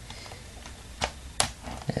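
Plastic LEGO Technic gear wheels clicking as a function is turned by hand through a turntable mechanism. There are faint ticks, then two sharp clicks a little after a second in, about a third of a second apart. The mechanism works poorly, and the gear wheels click a lot.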